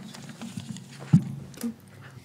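Handling noise close to a table microphone: papers rustling and things being set down, with a loud thump a little past one second in and a smaller knock about half a second later, over a steady low hum.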